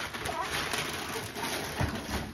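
Wrapping paper rustling and crinkling as a boxed gift is unwrapped, with a brief high child's vocal sound near the start and a soft thump near the end.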